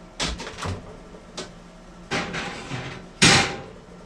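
Kitchen oven door opened and a cast iron skillet put in on the oven rack: a series of knocks and metal clanks, the loudest about three seconds in.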